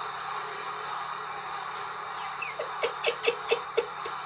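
Steady arena crowd noise from a TV broadcast, the crowd booing, then a man laughing out loud in about six quick bursts near the end.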